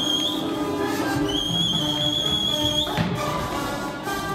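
Orchestral music playing, with a high whistle-like note held twice over it, the second time for about a second and a half. A single thud comes about three seconds in.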